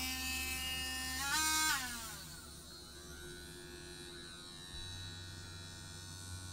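Harbor Freight adjustable rotary tool's small electric motor whining, rising in pitch about a second in, then winding down and stopping shortly after. A low steady hum follows near the end.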